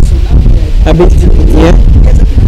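A woman speaking into a handheld microphone over a loud, steady low rumble that fills the sound.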